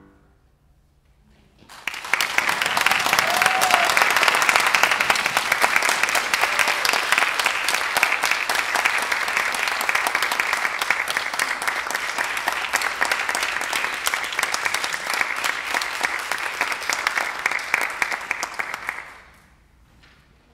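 Audience applauding. The clapping starts after about two seconds of quiet, holds steady for about seventeen seconds, and dies away near the end.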